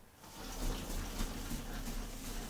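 Milk being poured from a small glass dish into a plastic mixing bowl of dry ingredients, starting about half a second in.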